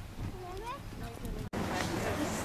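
Open-air background with distant voices and a short, high, wavering vocal call under a second in. About a second and a half in, it breaks off at an edit and a louder, busier background takes over.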